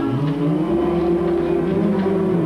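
A man's voice holds one long note after a quick upward slide at the start.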